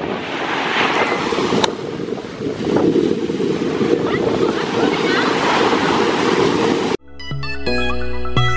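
Sea waves breaking and washing up the beach in a steady loud rush, with some wind on the microphone. About a second before the end the surf cuts off abruptly and music starts.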